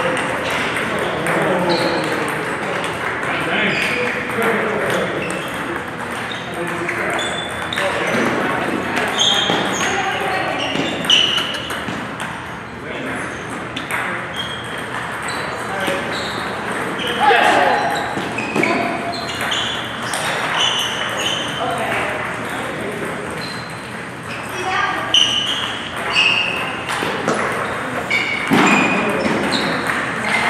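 Table tennis balls ticking off tables and paddles in rallies, coming in runs of quick hits, over background voices of other players.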